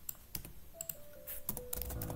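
Computer keyboard typing: about a dozen irregular key clicks, coming quicker in the second half.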